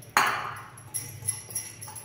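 A sharp clatter a moment in, fading over about half a second, then a few light metallic clinks with a faint high ring, from stainless steel kitchenware such as the mixer-grinder jar.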